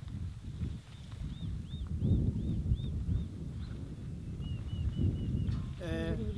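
A small bird singing: a run of six repeated arching chirps, about three a second, then five quick short notes, over a low, uneven rumble of wind on the microphone.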